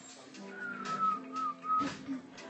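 A person whistling a short three-note phrase: a longer note sliding slightly down, then a wavering note and a short final one, over quiet background music, with a sharp click near the end.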